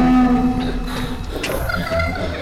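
A low, held moaning tone lasting about a second, followed by quieter scattered clicks and rustling.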